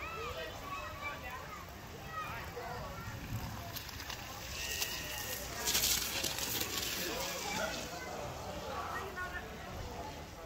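Children's voices calling and chattering in the background. Near the middle comes a rushing hiss of about two seconds: a child sliding down a wet slip 'n slide tarp.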